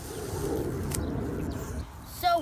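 A single sharp snip about a second in as a clump of garlic chives is cut, over a low steady rumble.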